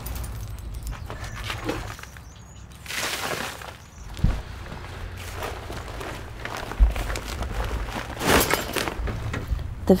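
A shovel scraping and scooping loose worm compost across a concrete floor, followed by irregular handling noises with a couple of short knocks.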